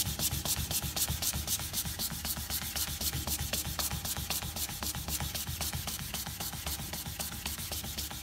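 Fine 240-grit glass paper wrapped round a wooden block, rubbed by hand in quick, even back-and-forth strokes along the grain of a wooden board: the finishing pass of hand sanding.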